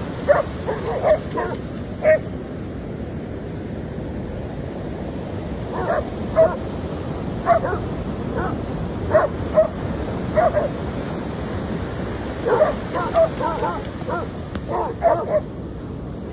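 Dogs barking and yipping in short bursts every second or two, over the steady rush of surf.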